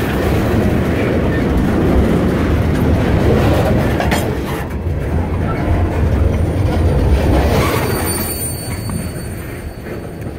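Freight train cars rolling past at close range: a heavy steady rumble of steel wheels on rail, with thin high wheel squeal coming in about three-quarters of the way through as the sound begins to fade.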